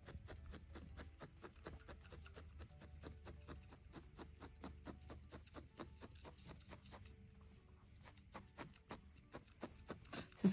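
Faint, quick pokes of a barbed felting needle stabbing through a folded strip of wool into a felting pad, several a second, felting it along the fold.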